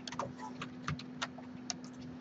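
Computer keyboard keystrokes: about ten short, separate key taps at an uneven pace, over a faint steady hum.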